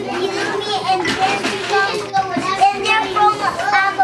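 A room of preschool children's high-pitched voices talking and calling out over one another.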